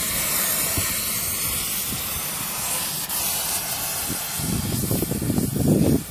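Oxy-fuel cutting torch hissing steadily as it cuts into a buried steel water pipe. About four seconds in the hiss fades and a rough, uneven low rumble takes over.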